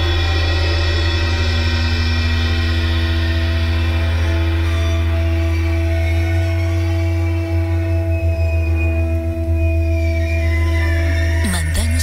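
Dark ambient music bed of a radio show bumper: a struck gong-like tone rings on and slowly fades over a steady low drone. Near the end come a few swooping sweeps that fall in pitch.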